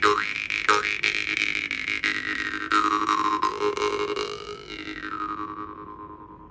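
Masko jaw harp (vargan) tuned to G, plucked over and over so its steady drone sounds under an overtone melody that rises and falls. Near the end the plucking stops and the last note rings on and fades away.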